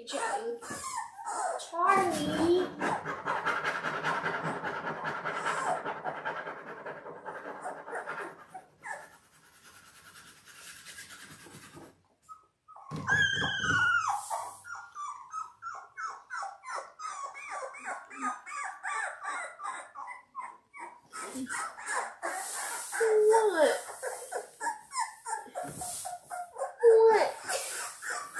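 Very young Labrador Retriever puppies, 17 days old, whining and squealing. A long drawn-out cry lasts several seconds, high squeals come about halfway through, and a string of short whimpers follows.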